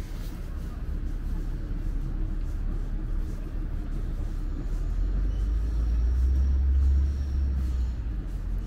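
Low rumble of city bus engines, growing louder about five seconds in and dropping back near the end.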